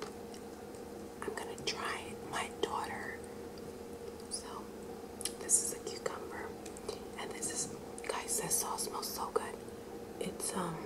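A woman whispering, with scattered small clicks and a steady low hum underneath.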